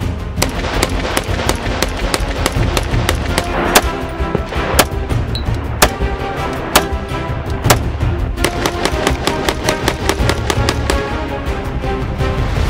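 Background music laid over a string of AR-15 rifle shots, the loudest cracks coming about a second apart through the middle.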